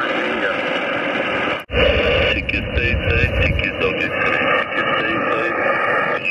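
Ham radio transceiver's speaker playing single-sideband receive audio: static hiss with faint, garbled voices of distant stations. The audio drops out briefly about a second and a half in, and a low rumble follows for about two seconds.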